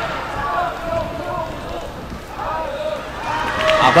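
Voices at a live boxing match: people calling out and talking at ringside over a steady low hum of the venue, growing louder near the end.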